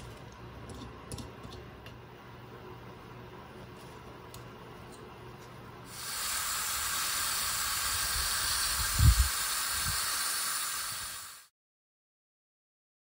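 Faint small clicks over a low hum, then a steady hiss that comes in about halfway through and lasts about five seconds, with a low thump partway through, before the sound cuts off to silence.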